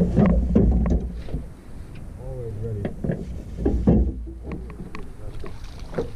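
Brief voices over a steady low rumble, with a few sharp knocks and clicks in the first second and again a little before the middle.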